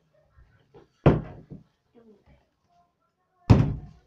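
A flipped water bottle hitting a wooden tabletop with a hard thud, twice: once about a second in and again near the end.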